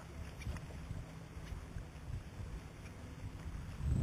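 Uneven low wind rumble on the camcorder microphone, with a louder low bump at the very end.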